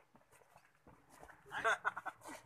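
Men talking outdoors, a voice rising loud near the end, with faint footsteps on gravel in the quieter first second.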